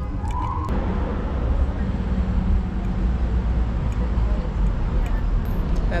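Road traffic on a city street: a steady rumble of passing cars, fuller from about a second in.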